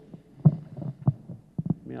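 Low thumps and breath noises picked up at close range by a handheld microphone: a loud one about half a second in, then a quick run of three near the end, just as a man's voice resumes.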